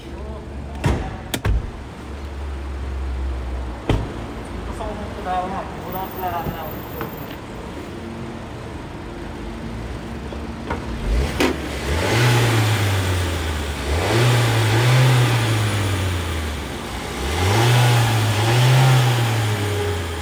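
A few sharp clicks and a knock in the first four seconds as the hood release is worked, then, from about twelve seconds in, a car engine revving up and down three times, each rise and fall lasting about two seconds.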